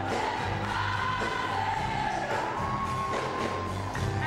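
Live band music with several voices singing together in long held notes over the band's accompaniment.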